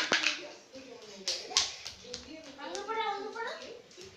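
A few sharp smacks in the first two seconds, the loudest about a second and a half in, then a young child's voice rising and falling in pitch.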